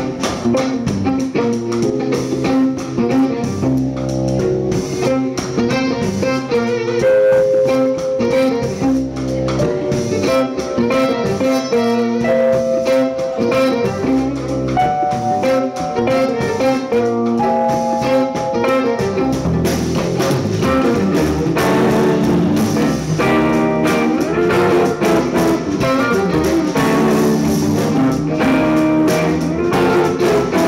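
Live instrumental band music: a bowed electric violin and an electric guitar playing over a drum kit, with held violin notes and steady rhythm throughout.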